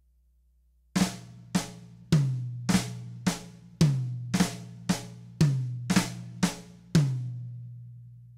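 Drum kit: a slow flam accent pattern on the snare drum, with the last left-hand note of each group played on the first rack tom. There are about two even strokes a second, starting about a second in and stopping near the end, and the tom's low ring carries on after the last stroke.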